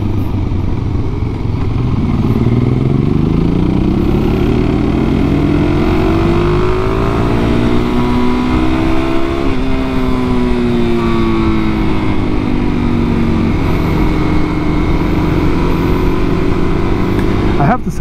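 Suzuki DR-Z400SM single-cylinder engine running on the road under a rush of riding wind. Its revs climb for several seconds, drop sharply about halfway through, ease off, then settle to a steady note near the end.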